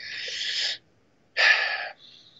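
A man drawing two audible breaths, the first just under a second long, the second shorter after a brief silence.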